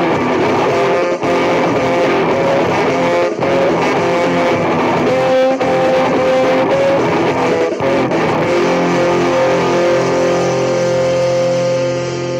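A ska band's recorded song with electric guitar and bass under a melody of held notes. From about two-thirds of the way in, it settles into longer sustained chords.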